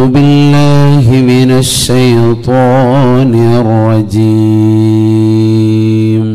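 A man's voice chanting a single long melodic phrase of Arabic Qur'anic recitation into a microphone, in tajwid style. The pitch winds in ornamented turns through the middle, with a brief hiss of a sibilant, and the phrase ends on a long held note.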